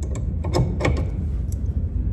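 Ratchet wrench clicking a few times, sharp and irregular, as it is worked on a stuck bolt under a car that has not yet broken loose, over a steady low hum.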